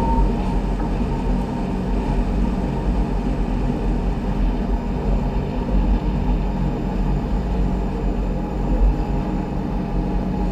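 Steady running noise of a Rhaetian Railway metre-gauge electric train heard from the driver's cab, a continuous deep rumble of wheels and running gear on the rails at speed.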